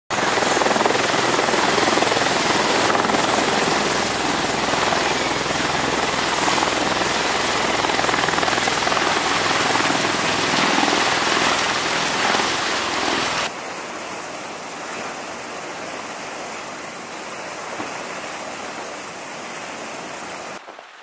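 V-22 Osprey tiltrotors running on deck and lifting off: a loud, dense rotor and engine rush with a steady low throb underneath. About 13.5 seconds in the sound drops abruptly to a quieter, thinner rush.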